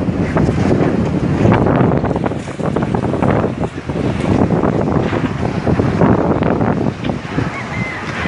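A big fire burning through buildings: a loud, continuous rush of noise full of crackles and pops, with wind buffeting the microphone.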